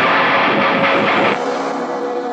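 Heavy metal band music with distorted electric guitar: a dense, loud hit lasting about a second and a half, then it cuts back to a thinner sound with a steady held tone underneath, in a stop-start pattern.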